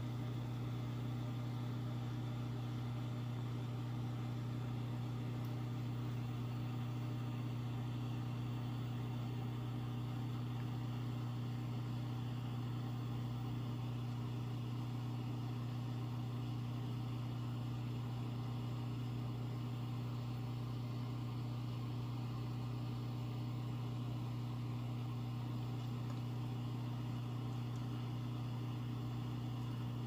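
A steady low machine hum with a faint hiss over it, unchanging and without clicks or other events.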